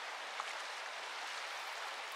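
Steady rushing of a shallow flowing stream, with one short tick about half a second in.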